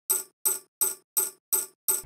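Hi-hat pattern made from chopped-up tambourine samples, playing on its own: short hits, evenly spaced, about three a second.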